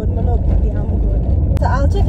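Steady low rumble inside a small car's cabin while it is being driven, with a woman's voice in short snatches at the start and near the end.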